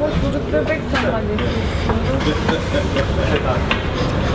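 Street ambience: a steady low rumble of road traffic with voices in the background, and a few light clinks of a metal spoon against ceramic plates.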